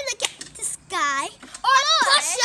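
A young girl's voice in short, high-pitched phrases, with a longer drawn-out note about a second in.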